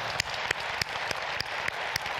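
An audience applauding steadily. Over it one person's claps sound close to the microphone, sharp and regular, about three a second.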